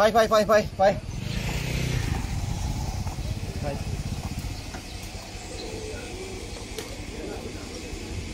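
Motorcycle engine running, a steady low rumble that starts about a second in and slowly eases off.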